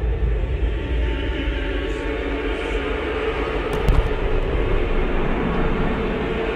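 Film-trailer sound design: a steady deep rumble under a held low drone tone, with a faint click about four seconds in.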